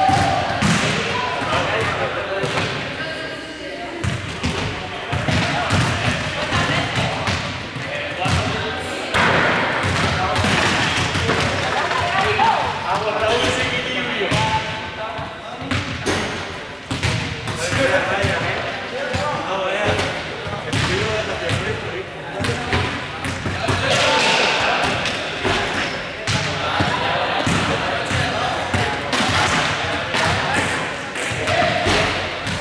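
Many voices chattering in a large sports hall, with repeated thuds of balls being kicked and bouncing on the court floor.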